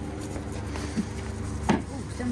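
Steady hum of wall-mounted refrigeration condenser fan units, with a small knock about a second in and a sharp click near the end.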